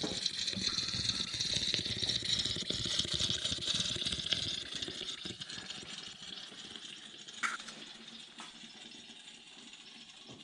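Motor oil pouring from a plastic jug into a tall plastic funnel and draining into the engine's oil filler: a steady liquid pour that grows quieter over the second half as the flow eases. A single short click comes about seven and a half seconds in.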